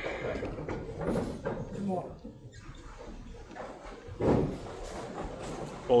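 Low background sound of a candlepin bowling alley with faint voices, broken by one sharp knock about four seconds in.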